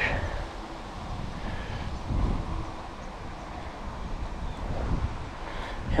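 Wind buffeting the camera microphone: a low rumbling noise that swells briefly about two seconds in.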